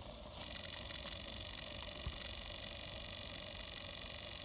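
MSM Clyde 4cc twin-cylinder oscillating model steam engine running steadily under steam: a very quiet, even hiss and whir that starts abruptly about half a second in.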